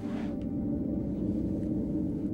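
A steady, low droning tone from ambient background music, held without change.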